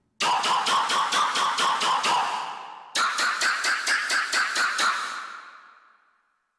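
Roland SC-8850 Sound Canvas hit patch from the program-56 orchestra-hit bank, played as rapid repeated stabs, about five a second. It comes in two runs, the second pitched higher, dying away near the end.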